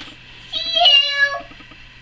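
A single short meow, just under a second long, with a slightly falling pitch.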